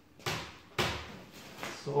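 A freshly demoulded fibreglass mould being handled as it is lifted off the part: two sharp knocks about half a second apart, each dying away quickly.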